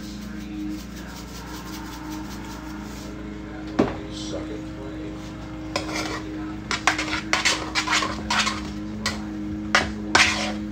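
A utensil stirring and scraping food in a cooking pot on the stove: a single knock about four seconds in, then from about six seconds a run of quick clattering strokes against the pot. A steady low hum runs underneath.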